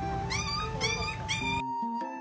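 Puppies whimpering: three short, high-pitched rising cries about half a second apart, over background music. The shop noise cuts out near the end, leaving the music alone.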